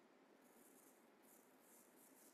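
Near silence: room tone, with faint, brief high-pitched rustles from about half a second in.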